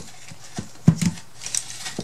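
Several light knocks and dull thumps of a small wooden box and a jar being handled and set down on a table, the loudest about a second in.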